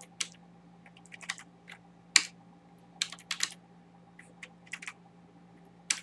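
Computer keyboard keystrokes: a few irregular, separate key presses rather than fast continuous typing. A faint steady hum runs underneath.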